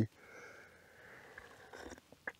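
A faint, drawn-out sip of coffee from a metal camping mug, with a few small ticks near the end.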